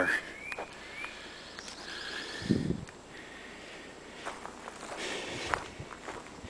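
Footsteps on a gravel road shoulder, with a few short rising bird chirps in the first couple of seconds.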